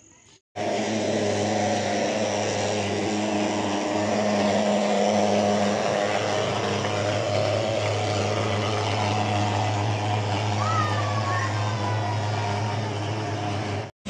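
Mosquito fogging machine running with a loud, steady engine drone that starts abruptly about half a second in.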